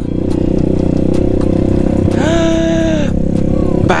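Motorcycle engine running steadily. About two seconds in, a separate tone rises briefly, holds for about a second and stops.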